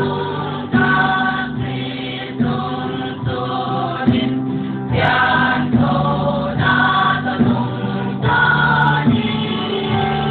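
A church choir singing a Christian praise song in Paite, with mixed voices in sustained, phrased lines. The sound is dull, with the top end cut off as in a radio broadcast.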